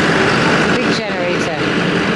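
Busy street ambience: a steady din of traffic and voices, with someone talking briefly about a second in.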